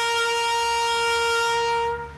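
Trumpet sounding a military honours bugle call, holding one long, steady note that stops just before the end.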